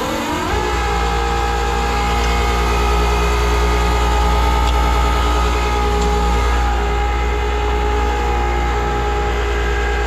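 Tanker trailer's product pump, driven by the truck's engine, spinning up with a quick rising whine and then running steadily while pumping liquid off the tank. It is held at a low speed for a slow unload.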